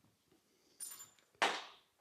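A brief high squeak, then about half a second later a single sharp knock that rings out briefly.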